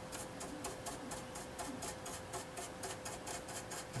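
Stiff bristle brush scrubbing dried clay-based wash off a plastic model's surface: a quick, even scratching of about five strokes a second.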